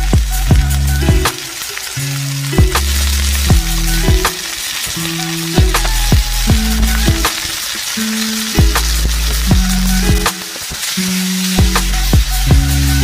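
Raw pork pieces sizzling in hot oil in a wok as they are dropped in by hand, a fine steady hiss. Louder background music with a deep held bass line and a regular beat plays over it.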